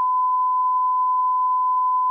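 Censor bleep: one steady, unbroken beep tone covering a censored line of speech.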